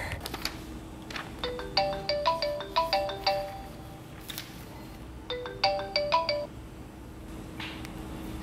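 Smartphone ringtone for an incoming call: a short melody of quick notes that plays, pauses, and starts again.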